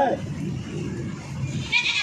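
A man's voice trailing off, then quieter background talk, and a brief high-pitched animal call just before the end.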